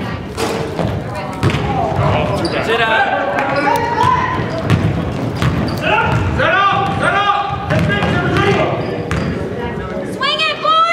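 A basketball bouncing on a hardwood gym floor during play, with repeated knocks from the dribble and the players' running, under shouting voices from the players and spectators, echoing in the gym.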